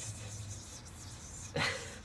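Quiet room tone with a faint steady low hum, broken about one and a half seconds in by a short breathy burst of a laugh.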